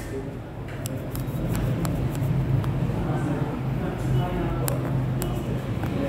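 Scattered light clicks and small knocks of handling while a whiteboard marker is fetched and changed, over a steady low hum.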